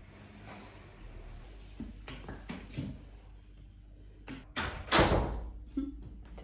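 A few light knocks and handling noises over a low steady hum, then a loud sharp thump like a door shutting about five seconds in.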